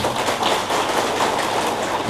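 Large audience applauding, many hands clapping steadily.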